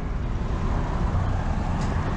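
Steady low outdoor rumble with no distinct events, the kind of background made by road traffic nearby.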